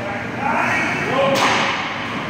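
A single sharp crack of a hockey puck being hit or striking, about a second and a half in, ringing briefly in the rink, with voices in the background.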